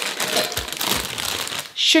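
A plastic bag of sugar snap peas crinkling as it is grabbed and lifted, a continuous rustle lasting nearly two seconds.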